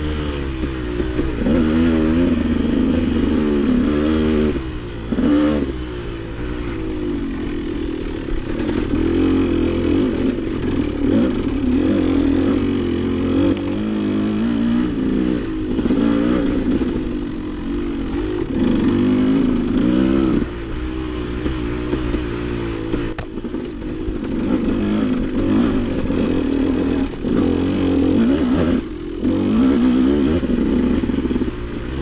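Dirt bike engine ridden on a trail, its pitch rising and falling every second or two as the throttle is opened and closed. Three times the engine sound drops off briefly.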